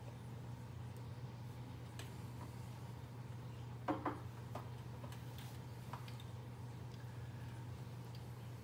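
Low steady hum of a quiet room with a few faint ticks, and about halfway through a single short knock of a whisky tasting glass being set down on the desk.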